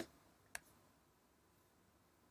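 Two sharp computer mouse clicks about half a second apart, over faint steady hiss.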